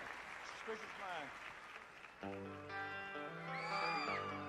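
Faint live-concert audience noise with a few high voices gliding in pitch. About two seconds in, a live band comes in with held, sustained chords.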